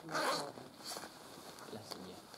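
A clothing zip rasping, a short pull just after the start and a fainter one about a second in, with a quiet spoken word over the first.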